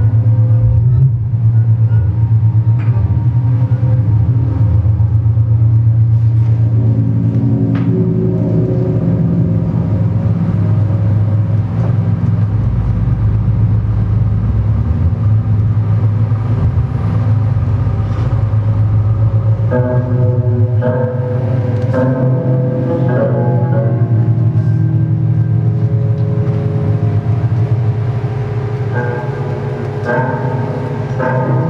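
Electroacoustic drone music played on synthesizers and live electronics: a loud, steady low drone with layered sustained tones above it. A deeper rumble swells in for a few seconds near the middle, and from about twenty seconds in a cluster of higher tones enters in broken, flickering pulses.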